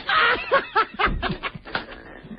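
Laughter: a quick run of short chuckles.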